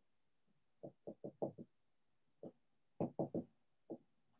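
Faint series of short, dull knocks or taps: a quick run of five about a second in, a single one, then three more close together near the end.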